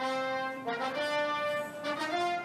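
Short brass fanfare music sting: held chords that start suddenly and shift to a new chord about half a second in.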